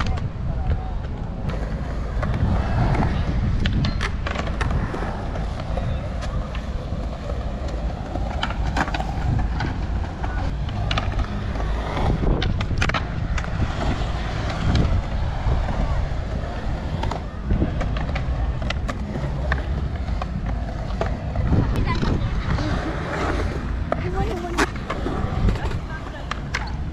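Skateboard wheels rolling on smooth concrete, a steady low rumble, with sharp clacks of boards hitting the ground scattered at irregular times.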